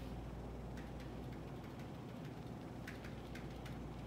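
A pen tip tapping lightly on a whiteboard as a dotted line is drawn, giving a few scattered faint ticks and a quick run of three near the end, over a steady low room hum.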